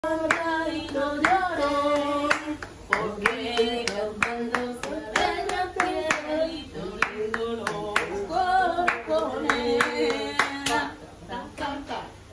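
Flamenco-style singing accompanied by rhythmic hand clapping (palmas), with sharp claps falling steadily under the voice; both stop about a second before the end.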